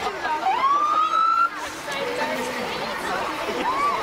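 An emergency vehicle's siren gives one short rising whoop, climbing for about a second and cutting off suddenly, amid crowd chatter.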